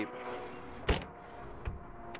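A door of a 1967 Jeep Wagoneer shutting with one sharp latch click about a second in, over a faint steady hum.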